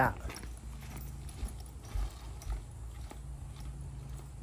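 Footsteps on a wooden boardwalk at a steady walking pace, about two light knocks a second.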